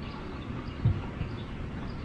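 Low, steady outdoor rumble, with a soft thump a little under a second in.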